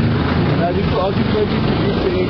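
A car's engine running close by as the car moves past, a steady low rumble, with faint voices over it.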